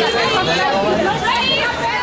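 Several voices talking over one another: crowd chatter.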